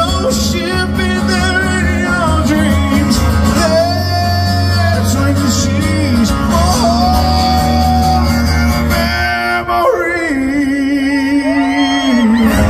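Live country song: a man singing while strumming an acoustic guitar. Near the end the guitar drops away under a long held, wavering sung note.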